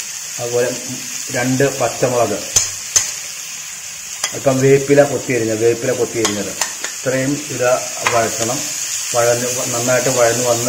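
Chopped onions, garlic, green chillies and curry leaves sizzling in hot oil in a frying pan, a steady hiss, with a spoon clicking and scraping against the pan as more is tipped in and stirred.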